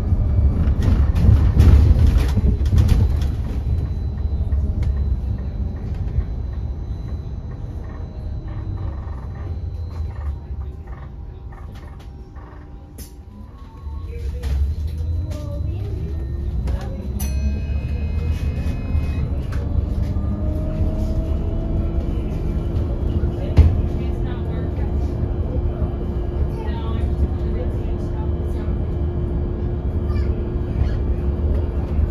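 Battery-electric Wright StreetDeck Electroliner double-decker bus heard from the upper deck: steady road and body rumble that dies down about halfway through, then the electric drive's whine rising in pitch as the bus speeds up again and settles to a steady tone near the end.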